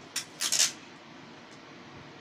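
Adhesive tape being handled and pulled from its roll: two short, dry rasps close together, about a quarter second in and half a second in.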